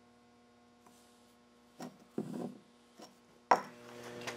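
Mostly quiet, then a few light knocks and a short scrape about halfway: a hardened steel ball nose cutter being handled over a wooden bench. A sharp click near the end, after which a low steady hum sets in.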